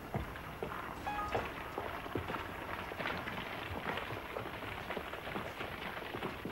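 Loose limestone rocks clattering and knocking in a quarry as they are worked and shifted: a dense, irregular run of small stone impacts.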